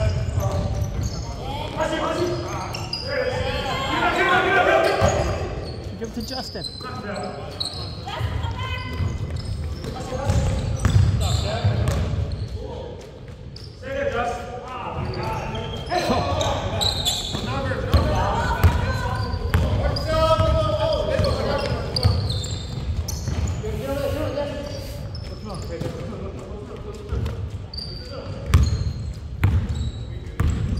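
A basketball bouncing on a hardwood gym floor amid players' voices calling out, the sounds echoing in a large gymnasium.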